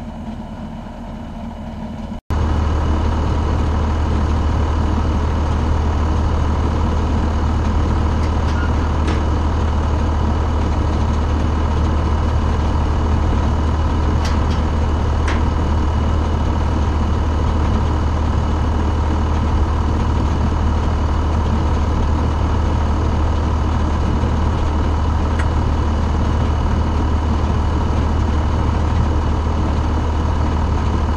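John Deere 7610 tractor's six-cylinder diesel engine running steadily while pulling a no-till grain drill. It is quieter for the first two seconds, then much louder and closer from about two seconds in.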